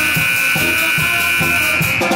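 Live pep band of trumpets, clarinet and sousaphone holding one long high note for about two seconds. The drum beat drops out under it and comes back just after.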